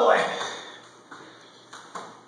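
A man's strained exclamation, "oh boy!", fading out in a reverberant hall, followed by a few faint taps.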